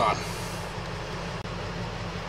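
Steady background hum of the ambulance's running equipment in its patient compartment, with a brief cut about one and a half seconds in where the recording was paused and resumed.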